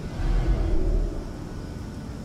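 A DC-8 airliner passing low overhead: a deep rumbling rush that swells to its loudest in the first second, then settles to a steady rush of air.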